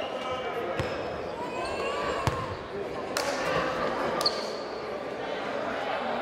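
Basketball bouncing on a hardwood gym floor: a few separate thuds, the loudest a little over two seconds in, over steady chatter of voices echoing in the gym.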